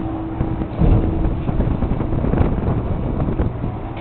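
Wind buffeting the microphone aboard a boat at sea, a rough low rumble over the boat's running noise. A steady hum drops away about a second in, and the rumble grows louder from then on.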